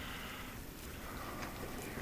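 Faint, steady outdoor background noise with no distinct events.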